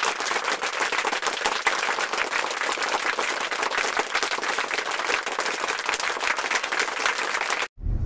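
Crowd applauding steadily, a dense patter of many hands clapping, cut off abruptly near the end.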